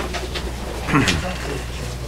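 Indistinct low voice and people moving about in a meeting room, over a steady low hum, with a short click at the start and a brief falling murmur about a second in.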